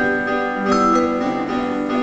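Vibraphone played with mallets, its struck metal bars ringing on in sustained notes, over an electric keyboard accompaniment in a vibes-and-piano duo.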